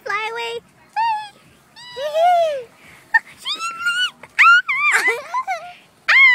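A child's high-pitched voice making wordless squeals and play noises for toy characters: a string of short calls, about eight, that swoop up and down in pitch.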